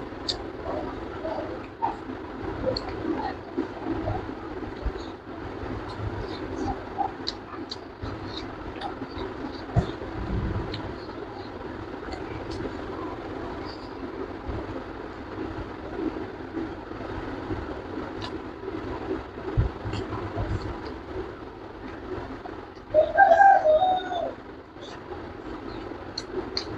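Close-up eating sounds of a person eating rice and fish by hand: chewing, with many small wet mouth clicks and smacks, over a steady background hum. About 23 seconds in a short voiced hum from the eater is the loudest sound.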